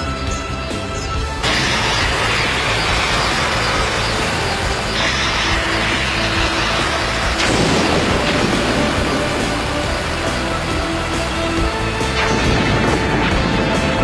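Dramatic background music over the loud, dense rumble and grinding of a drilling vehicle's sound effect as it bores through rock underground. The rumble swells in surges a little over a second in, around five seconds, near eight seconds and again about twelve seconds in.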